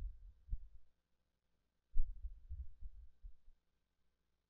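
Muffled low thuds of keys being typed on a computer keyboard: one thud about half a second in, then a quick run of them about two seconds in.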